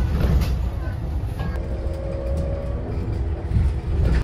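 Cabin noise inside a city bus on the move: a steady low rumble with a humming tone over it that breaks off briefly about a second and a half in, then resumes.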